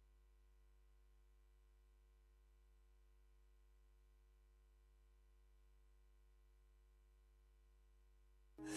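Near silence with a faint, steady low hum that does not change.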